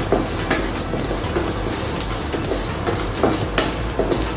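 Chopped shallots, curry leaves and hing frying in coconut oil, sizzling steadily as a wooden spatula stirs and scrapes them around a nonstick pan. There are a few sharp taps of the spatula against the pan, one about half a second in and another near the end.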